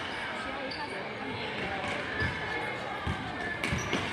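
Basketball dribbled on a hardwood gym floor, with a few bounces in the second half, over the chatter of spectators.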